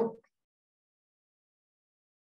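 A woman's voice trails off in the first moment, then complete silence: the food processor that is about to run is not heard at all.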